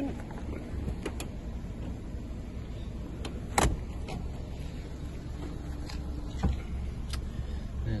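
Steady low rumble inside a small car's cabin, with a handful of scattered clicks and one sharper knock about three and a half seconds in, as a handheld phone is moved around the cabin.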